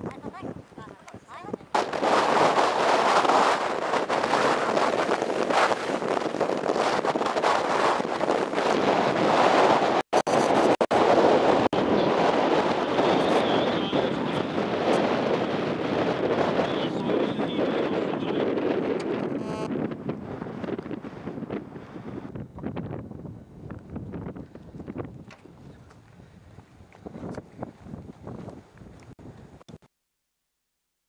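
107mm rocket launching from an improvised ground launcher: a sudden loud rushing blast about two seconds in that keeps going for many seconds, then slowly dies away.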